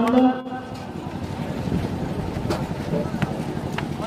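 Steady open-air background of a crowd of spectators talking, with wind on the microphone; a man's voice breaks off in the first half second, and a few faint sharp sounds come later.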